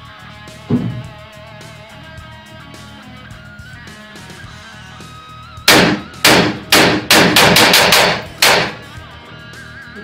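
AR-15-style rifle firing a string of about ten shots over three seconds, a few spaced shots and then a rapid run, in a function test that shows it cycling and firing properly. Guitar music plays underneath.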